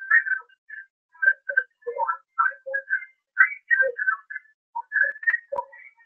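Whistling: a quick, broken run of short whistled notes that hop between low and high pitches.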